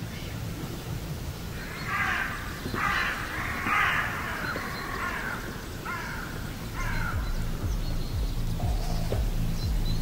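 A crow calling outside: about six harsh caws between about two and seven seconds in, over low background music.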